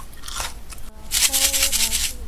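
Close-miked ASMR eating sounds: scratchy crunching and crackling that turns louder and denser about a second in. A few soft held musical notes sit underneath.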